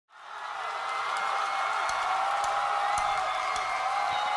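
Concert crowd cheering and applauding, fading in at the start, with a steady high tone held through the noise.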